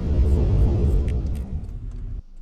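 Low road and engine rumble inside a moving car's cabin, loudest in the first second and easing toward the end.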